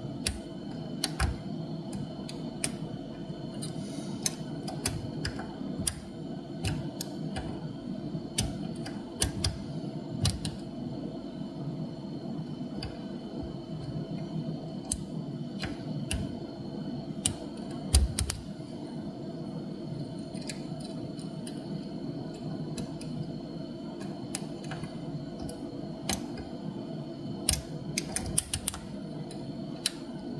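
Irregular small metallic clicks and ticks as a pick and tension wrench work the pins of a seven-pin brass dimple euro cylinder during lock picking, over a steady low hum. The clicks come at uneven intervals, with a sharper one about eighteen seconds in and a quick run of them near the end.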